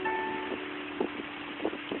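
Piano keyboard notes ringing on: a higher note struck at the start dies away within about half a second, while a lower held note keeps sounding beneath it.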